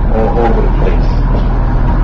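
Steady low rumble of a moving vehicle heard from inside, with a brief murmur of voices about half a second in.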